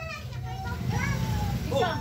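Voices of children and adults talking in the background, with a clearer voice saying "Oh" near the end, over a low steady rumble.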